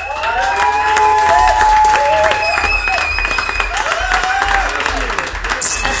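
A small group clapping and cheering with drawn-out whoops as the song ends. A radio jingle starts near the end.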